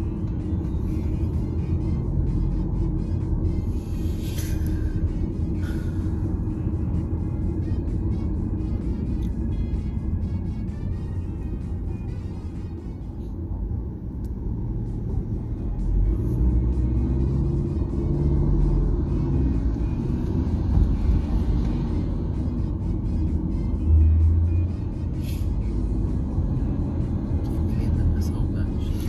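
Low, steady rumble of a car driving through city streets, heard from inside the cabin, with background music playing over it.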